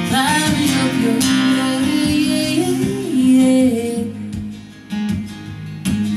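Woman singing a folk-rock song while strumming a steel-string acoustic guitar, performed live. The sound dips briefly just before the five-second mark, then a sharp strum brings it back up.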